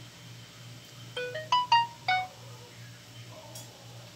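A short electronic chime of about five quick notes, rising and then falling, like a phone ringtone or notification tone, about a second in.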